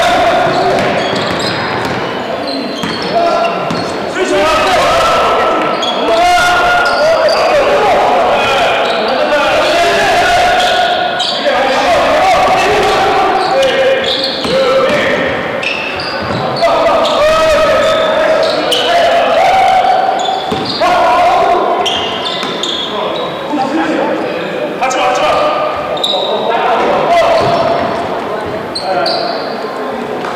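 A basketball bouncing on a hardwood court, with players calling out and shouting during live play, echoing in a large gym.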